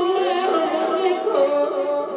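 A man's voice singing a naat, an Urdu devotional poem in praise of the Prophet, into a microphone. He holds long notes that waver and glide between pitches.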